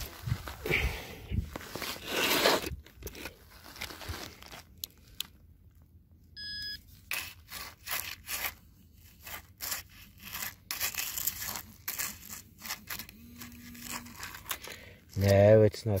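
Sand and pebbles scraping and crunching as a metal-detecting target is dug out and sifted. A short high electronic beep comes about six seconds in, and a short low buzz about thirteen seconds in.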